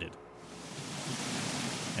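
Steady rush of falling water that fades in about half a second in and slowly grows louder.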